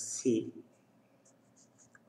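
Felt-tip marker writing on paper: a run of short, faint scratchy strokes that starts a little past halfway.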